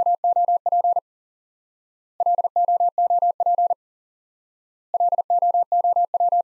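Morse code sent at 40 words per minute as a single keyed steady tone, spelling the word LOOP three times in a row. Each sending lasts about a second and a half, with about a second of silence between them.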